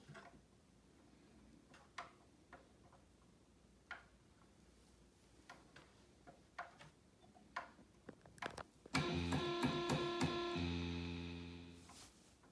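Faint scattered clicks of fingers pressing buttons on a Moog Grandmother synthesizer. Then, about nine seconds in, the synthesizer sounds loudly: a quick run of changing notes that settles on one low held note and fades away near the end.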